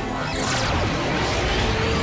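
Magic-transformation sound effects over dramatic background music: a whoosh sweeping down in pitch about a third of a second in, then a rising whoosh toward the end.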